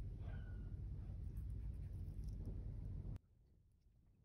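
Quiet studio room tone with a steady low hum, no clear brushing sound, cutting off abruptly to near silence about three seconds in.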